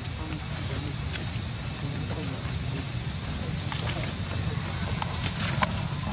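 Faint human voices in the background over a steady low rumble, with scattered light clicks and rustles.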